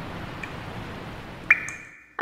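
Intro sound effect: a soft, steady rushing swell with a faint ping about half a second in. About one and a half seconds in comes a bright chime ping, the loudest sound, which rings on as the swell fades.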